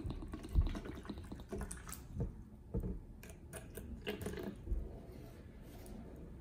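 Bottled spring water pouring from a plastic bottle into a clear plastic cup, a running stream of liquid, with a few light clicks and knocks along the way.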